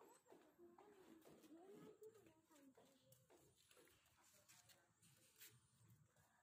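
Very faint, distant voices, near silence, with a few soft knocks from the phone being moved.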